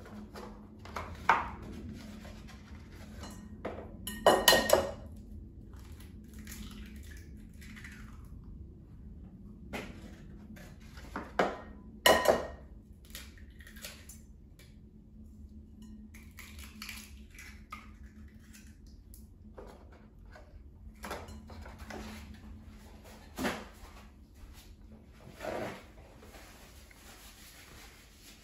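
Eggs knocked against the rim of a glass mixing bowl and cracked open, with several sharp knocks (loudest about four seconds in and again about twelve seconds in) and quieter handling sounds of shells and carton between.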